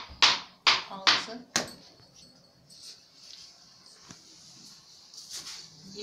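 Dry fine bulgur being scooped with a tea glass and poured into a metal tray: a grainy rustle, in several quick strokes in the first second and a half, then fainter.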